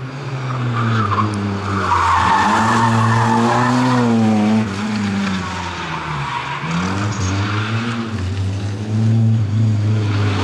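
Opel Corsa rally car driven hard through tight turns: the engine revs rise and fall several times, with tyres squealing for a few seconds from about a second in and more faintly again later.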